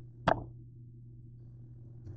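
A single sharp knock about a third of a second in, as something is set down on a kitchen counter, over a steady low hum.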